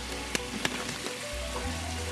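Salmon fillets sizzling steadily in a frying pan, under soft background music, with two light clicks about a third and two-thirds of a second in.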